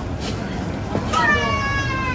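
A child's high-pitched, drawn-out vocal sound, falling slightly in pitch and lasting about a second, starting about halfway through, over steady background noise of a busy shop counter.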